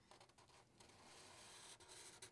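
Faint rub of a Sharpie marker tip drawing a line across paper, heard mainly in the second half.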